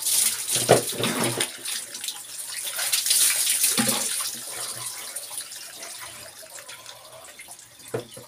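Water poured from a plastic dipper over a person's head, splashing down over her body. The splashing is loudest in the first half and dies away toward the end.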